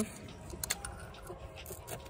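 A few faint, light metallic clicks and taps as the gear shift lever and its bolt are handled and pulled off the dirt bike's engine.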